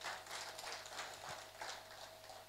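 Faint, irregular light clicks and taps over quiet room noise, with a faint steady hum.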